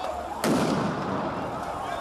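A tear-gas grenade going off with one loud bang about half a second in, followed by a long echoing rumble off the street.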